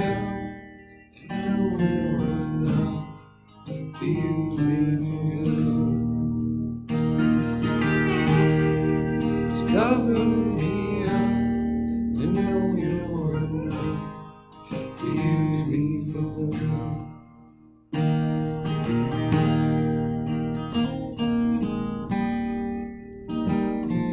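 Acoustic guitar strummed in chords, with a few brief gaps where a chord rings and fades before the next strum, and one near-silent pause about eighteen seconds in before a strong strum.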